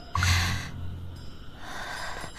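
A person's short snort through the nose with a low hum, starting just after the beginning and dying away within about a second.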